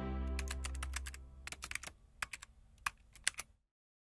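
Logo sting sound design: a held musical chord dies away while a run of irregular keyboard-typing clicks plays. The clicks thin out and stop about three and a half seconds in.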